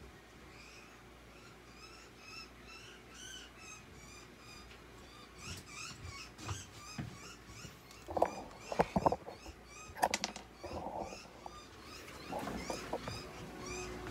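Budgerigar chirping and chattering in short, repeated high notes. From about eight seconds in, a cluster of sharp clattering knocks, the loudest sounds, as the plastic-and-wire bird cage is gripped and moved.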